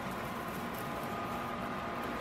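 Steady background room noise: an even hiss with a faint, steady high-pitched whine and a low hum, and no distinct sounds.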